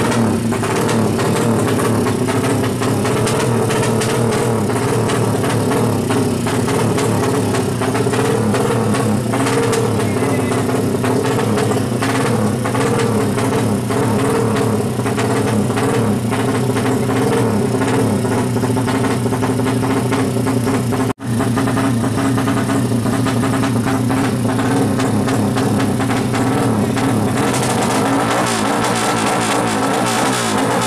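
A modified drag motorcycle engine running at the start line with its revs held fairly steady, the pitch wavering a little. There is a brief dropout about two-thirds of the way through.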